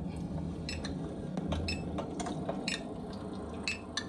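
Handheld GQ Geiger counter (nuclear radiation detector) clicking irregularly, about six sharp clicks in four seconds, each click a detected count, as it reads around 100 counts per minute. A steady low vehicle cabin rumble runs underneath.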